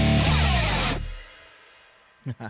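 Hard rock band music with electric guitars, bass and drums ending on a final hit. It stops about a second in and rings away to near silence.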